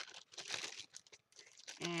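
Clear plastic storage bag crinkling in short, irregular rustles as an item is pulled out of it, louder in the first second and fainter after.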